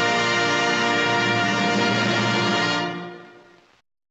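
Orchestral film score with brass holding a sustained closing chord, which fades out over the last second and ends in silence.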